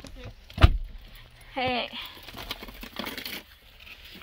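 A car door shutting with a single heavy thump about half a second in. Then comes a brief hummed voice sound, and light clicking and rattling as things are handled in the car cabin.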